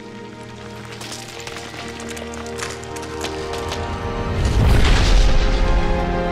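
Dramatic TV score with sustained tones swelling under sharp crackling effects, building to a deep low boom about four and a half seconds in, then settling back into the music.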